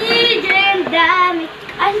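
A baby's high-pitched, sing-song vocalizing: three drawn-out calls, then a short "ah" near the end.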